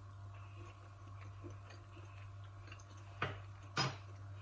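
Faint mouth sounds of a person tasting a spoonful of chocolate and walnut mixture: soft chewing and lip smacks, with two sharper short sounds near the end.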